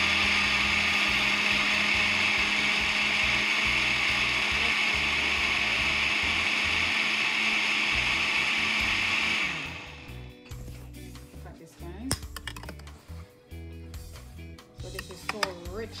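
Countertop blender running steadily as it purées beetroot, carrot and cold water into juice, then switching off abruptly about nine and a half seconds in. A few light clicks and knocks follow.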